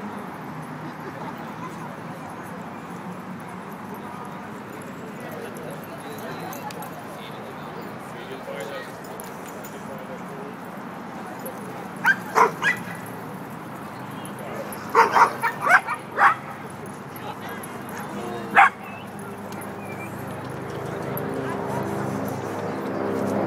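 A small dog barking in short, sharp yips: three quick barks, then a run of about six, then a single bark. A steady murmur of people talking runs underneath.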